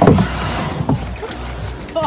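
Canoe paddling: a paddle stroke through the water gives a sudden rush of water noise at the start that eases into a steady wash.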